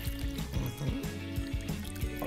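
Water pouring from a plastic bottle into a plastic measuring jug, filling it, under steady background music.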